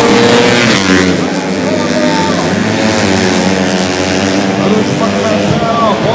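Four-stroke 125cc underbone racing motorcycles at full throttle going past, their engine notes wavering and gliding in pitch.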